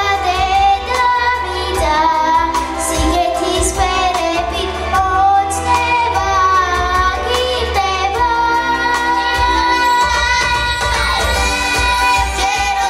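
A children's vocal group singing a song together into microphones, over accompanying music with a steady low bass.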